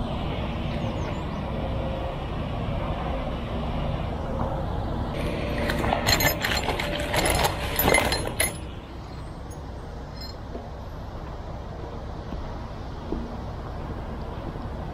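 Metal anchor bolts clinking and rattling against each other in a cardboard box as it is handled, a run of clinks lasting about three seconds midway, over a steady low rumble.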